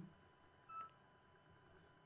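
A single short, faint electronic beep from the Yaesu FT-450D transceiver's front panel about three-quarters of a second in, the kind of confirmation beep the radio gives on a button press; otherwise near silence.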